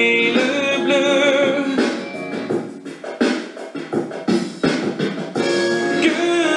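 A song with a wavering sung line over a backing track for the first two seconds. It then drops to a mostly percussive stretch of beats, and the melody comes back near the end.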